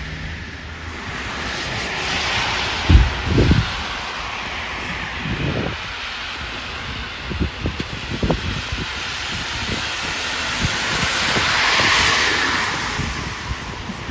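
Cars passing on a wet, slushy street, the tyre hiss swelling and fading twice, a couple of seconds in and again near the end. Low thumps of wind gusting on the microphone, the loudest about three seconds in.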